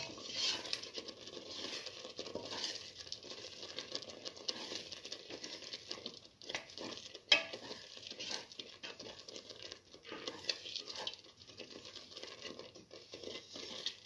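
A spoon stirring and scraping through a thick stew of split pigeon peas and egg in a metal pot, scrambling the egg into it, with irregular clicks of the spoon against the pot; one sharp click about seven seconds in is the loudest.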